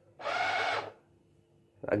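Automatic soap dispenser's small pump motor running once, for under a second, as a hand is held under the sensor, dispensing a dose of liquid soap.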